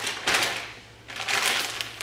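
Plastic frozen-food bags crinkling as they are handled, in two rustling bursts: one shortly after the start and a longer one around a second and a half in.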